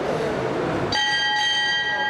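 Boxing ring bell struck once, about a second in, then ringing on with a clear, slowly fading tone: the signal for the round to start.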